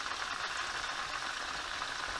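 Chicken wings shallow-frying in a skillet of hot oil and melted butter, sizzling steadily.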